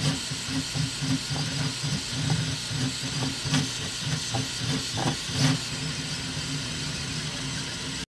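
Mini Kossel Pro delta 3D printer printing: its stepper motors hum in short, irregular bursts of pitch as the effector changes direction, over a steady fan hiss. The motor bursts thin out in the last couple of seconds.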